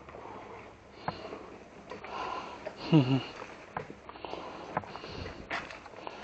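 A person's sniffing and breathing close to the microphone, with scattered small clicks and knocks. About halfway through comes a short low sound that drops in pitch, the loudest moment.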